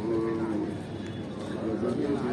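A man chanting an Arabic prayer recitation aloud, holding one long note about half a second at the start before his voice drops lower.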